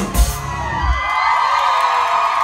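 Live rock band with drums and electric guitars playing its last loud hits, which stop about a second in. The audience's screaming and cheering, many high voices together, then fills the rest.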